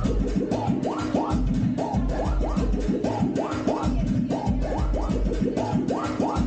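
Dance music played loud over a sound system: a fast, busy beat with a deep bass pulse and a short rising sound repeated two or three times a second.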